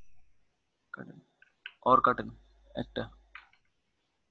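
Computer mouse clicks and keyboard key presses as selected text is deleted, starting about a second in, with a few short spoken syllables mixed in.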